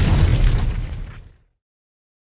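A loud burst of rumbling noise dying away and ending about one and a half seconds in.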